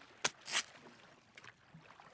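Cartoon sound effect of a stick scratching tally marks in sand: two short scratches close together near the start.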